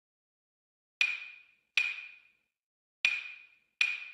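Four sharp, knocking percussion hits, each ringing briefly with the same high tone, falling in two pairs from about a second in: the sparse opening of a music track that kicks in with drums just afterwards.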